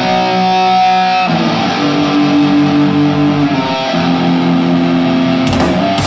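Live punk rock band: electric guitar playing long, held chords that change twice. The rest of the band, with drums or cymbals, crashes in near the end.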